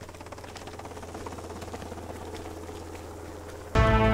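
Helicopter rotor and engine drone, steady and slowly growing louder. About three-quarters of the way through, loud music with long held notes cuts in suddenly and drowns it out.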